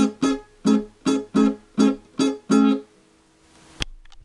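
Guitar strumming a dancehall rhythm on a single barred A chord: eight evenly paced strums, the last one held, then the playing stops. A sharp click near the end.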